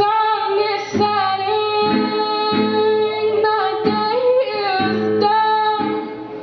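A woman singing long held notes into a microphone, accompanied by strummed acoustic guitar, in a live acoustic performance.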